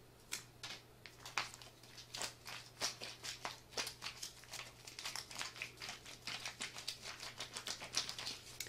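MRE retort pouch crackling and crinkling under the hands as it is kneaded back and forth, working the warmed food inside to even out its temperature. Quiet, irregular crackles, several a second, starting a moment in.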